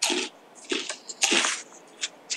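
A run of short breathy noise bursts on an open microphone, about one every half second, each a brief hiss or puff with quiet gaps between.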